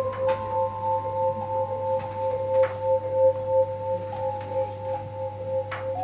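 Vibraphone playing unaccompanied: two or three long, sustained notes ringing together with a slow pulse, the upper note changing pitch a couple of times on soft mallet strikes.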